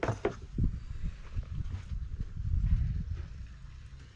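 Handling noise: a low rumble with irregular soft knocks as a canvas instrument cover is pulled back and the camera is moved.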